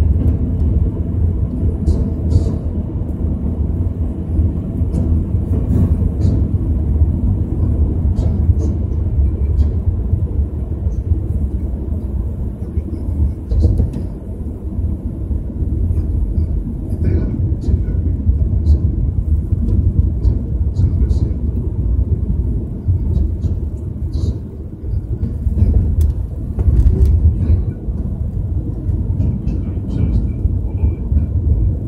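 Road and engine noise heard inside a moving Mercedes-Benz car: a steady low rumble from the tyres and engine, with occasional small clicks and ticks from the cabin.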